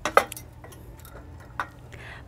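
Two light clinks of solar water-heater tube pieces being handled and set down on concrete, one just after the start and one near the end.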